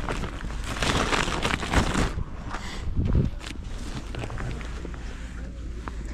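Rustling and crackling of a nylon bag being handled, loudest over the first two seconds, with a single dull thump about three seconds in and softer handling noise after.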